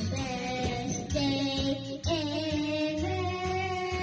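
A child singing karaoke into a microphone, holding some notes long, over a backing track with a steady beat.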